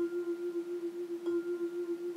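A single sustained, bell-like musical tone that starts suddenly and holds at one steady pitch with a slight waver in loudness; fuller music comes in just after it.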